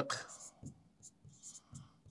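Marker writing on a board: a series of short, faint scratching strokes as words are written by hand.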